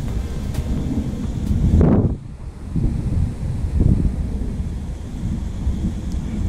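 Wind buffeting a GoPro action camera's microphone, a low, gusty rumble that is loudest about two seconds in.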